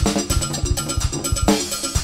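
Live band playing up-tempo music: a ringing metal percussion beat over kick drum and keyboard, with loud drum-and-cymbal hits at the start and about halfway through.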